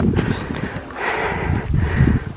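Wind buffeting the microphone, with a person's breathing close to it, heaviest about a second in.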